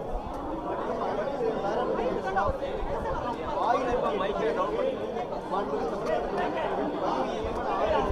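Speech: a man talking continuously into a bank of microphones, with other voices chattering around him.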